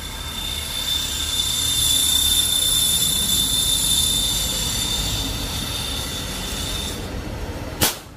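High-pressure air hissing with a steady high whistle as a scuba tank's fill hose charges a PCP air rifle, stopping about a second before the end. Then a single sharp shot from the shrouded side-lever PCP air rifle, a chronograph test shot.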